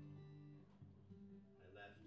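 Acoustic guitar playing quietly, with slow, held low notes that change every half-second to a second.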